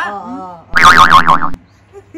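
A cartoon 'boing' sound effect added in editing: a loud, wobbling tone whose pitch swings up and down about four times over less than a second, then cuts off suddenly. A woman is talking just before it.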